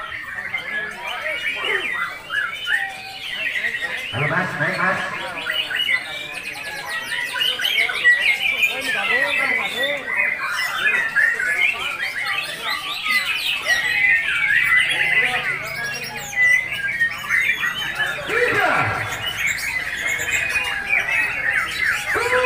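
Several caged competition songbirds sing at once, a dense, continuous chorus of rapid whistles, trills and chirps.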